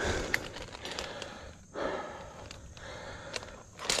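A tree climber breathing hard, several long breaths in and out with short pauses between them, and a few light clicks.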